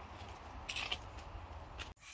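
Faint handling noise of a moving handheld camera: a few soft scrapes and rustles over a low steady rumble, cutting off abruptly near the end.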